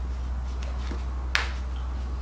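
A small fabric purse is handled and folded by hand, with faint rustling and one sharp click a little past the middle, over a steady low hum.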